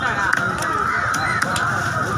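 Busy fish-market din: overlapping voices and calls over a steady background, with a few sharp knocks.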